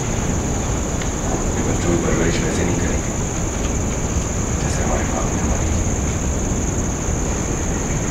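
Steady low rumble of room noise with a constant high-pitched whine, and faint muffled voices about two seconds in and again near five seconds.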